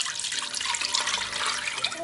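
Pork-head broth poured from a pot through a fine metal mesh strainer: a steady stream of liquid splashing through the sieve.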